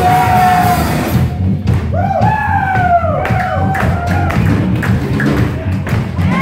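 A rock trio playing loud live music in a small room: bass and drums fill the low end, with wavering, sliding high notes about two seconds in and again near the end.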